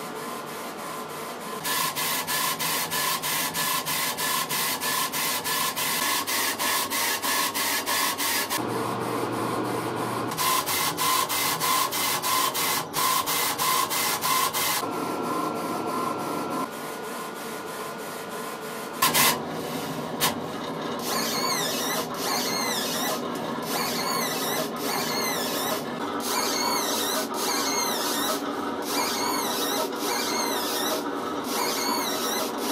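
Laser engraver at work: the laser head's carriage runs back and forth in rapid raster strokes, several a second, over a steady machine hum, while the rotary attachment turns the anodized aluminum beads. The stroke pattern pauses and changes a few times, with a sharp click about two-thirds of the way through.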